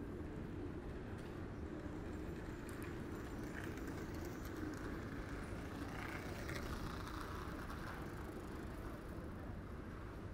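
Street ambience: a steady low hum of distant traffic, with a soft passing noise that swells and fades between about four and eight seconds in.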